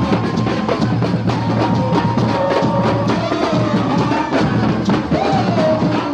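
Brazilian carnival drum group playing large bass drums (surdos) with mallets in a steady, driving rhythm. Long held notes sound above the drumming.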